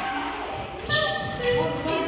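Indistinct voices chattering in the background, with no clear words.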